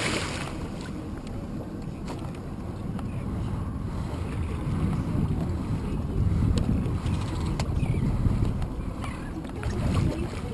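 Steady low rumble of wind on the microphone and water moving against a boat's hull. At the very start a splash from a hooked blacktip shark thrashing at the surface beside the boat dies away.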